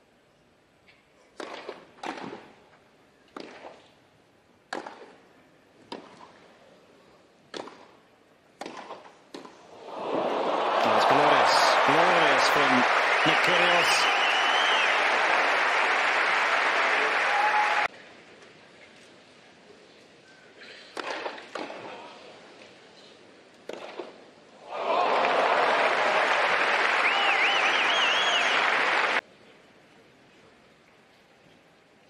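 Tennis ball struck back and forth with racquets in a rally, a sharp pop about every second, followed by loud crowd applause with shouts that is cut off abruptly. A couple more racquet strikes follow, then a second burst of applause, also cut off suddenly.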